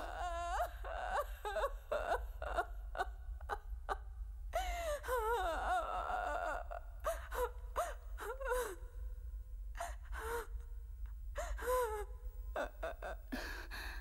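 A woman weeping aloud: wailing cries broken up by gasping sobs.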